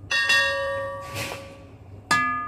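The metal inner pot of a soup cooker machine is struck once as ingredients are dropped into it, and it rings like a bell, the ringing dying away over about a second and a half. A short rustle comes about a second in.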